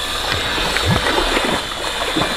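Irregular water splashing and sloshing from a swimmer's kicking and paddling strokes in a pool.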